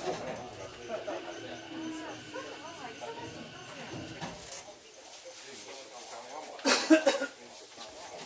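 Indistinct voices of people talking inside a slowly moving train, with a short, loud, noisy burst about seven seconds in.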